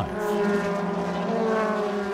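Mercedes-AMG C-Class DTM race car's V8 engine running at high revs as the car drives past, a steady engine note that rises slightly in pitch.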